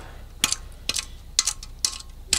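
Steady ticking: sharp clicks repeating evenly about twice a second.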